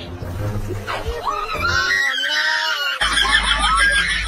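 Shrill screaming mixed with laughter. There is an abrupt cut about three seconds in, after which the shrieking carries on over a low hum.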